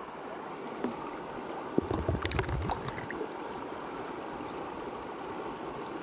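Water sloshing and splashing in a plastic Garrett Gold Trap gold pan as it is swirled, in a short burst about two seconds in, over the steady rush of a shallow creek.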